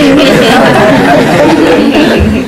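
A group of people talking and laughing over one another at once, a loud, continuous jumble of voices.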